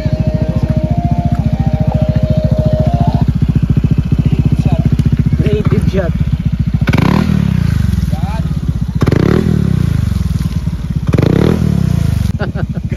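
Scooter engine running with its rear wheel in shallow river water, revved three times in the second half, each rev rising and falling as the spinning tyre churns up spray.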